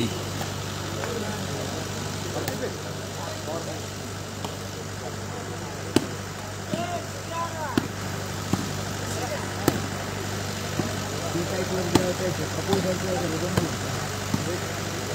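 Volleyball rally: several sharp slaps of hands hitting the ball, spaced a second or more apart, over a steady low engine-like hum and faint spectator voices.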